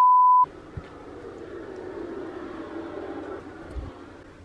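A steady, single-pitch 1 kHz test-tone beep of the kind played over colour bars. It lasts about half a second and cuts off abruptly, leaving only faint background noise.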